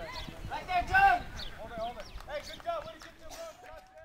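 Voices of several people talking and calling out across an open softball field, the words unclear; the voices fade out near the end.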